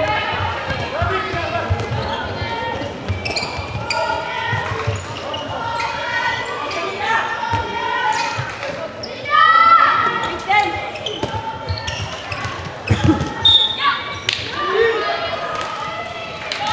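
Handball match in a sports hall: players and spectators calling and shouting, echoing in the hall, with a handball bouncing on the court floor.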